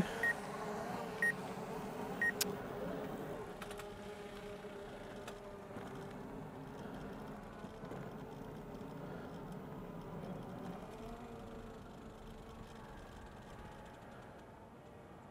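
Faint steady hum of a small camera drone's propellers that slowly fades, with a slight change in pitch near the end. Three short high beeps about a second apart at the start.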